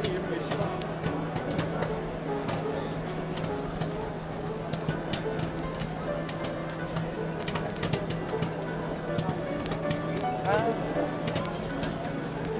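Layered circus-tent ambience: a crowd murmuring with carnival music underneath and a steady low hum. Scattered sharp crackling clicks run through it, with a few brief rising voice-like sounds near the end.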